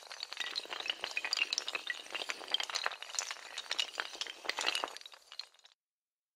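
Intro sound effect of a long run of hard tiles toppling like dominoes: a dense, rapid clatter of clicks and clinks that thins out and stops short near the end.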